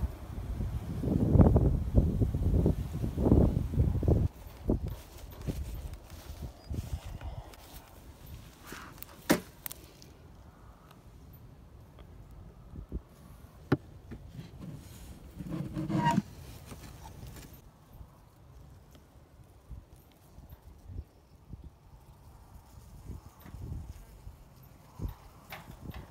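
Wooden nuc box and frames being handled: sharp clicks and knocks of wood and hive tool scattered through, one of the plainest about a third of the way in. Loud rumbling handling noise on the microphone in the first four seconds.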